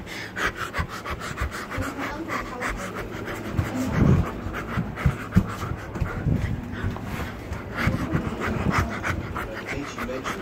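A person panting rapidly and heavily, out of breath after a set of burpees, with the thumps and rustle of the phone and a plush toy being handled.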